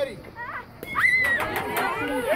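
A bat strikes a baseball with one short, sharp crack a little under a second in. It is followed at once by loud, high-pitched excited shouting from the onlookers.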